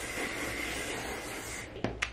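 Aerosol hairspray spraying in a steady hiss that stops shortly before the end, followed by a short click.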